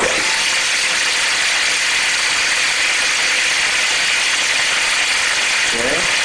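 Electric drill motor running at a steady speed, spinning a five-gallon egg-beater-style paint mixer in a one-gallon can of paint. It starts suddenly and holds one even, loud pitch.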